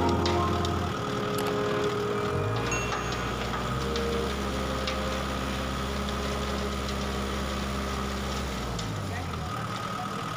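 Tractor engine running steadily while driving a rotary tiller through a compost heap, with short scattered clicks; its pitch shifts briefly about two and a half seconds in and again near the end. Background music fades out in the first second.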